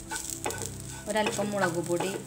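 A spatula stirring and scraping a grated coconut mixture around a nonstick frying pan. The scrapes carry a wavering squeak, and the spatula knocks against the pan about half a second in.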